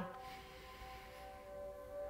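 Faint background music of a few long-held tones.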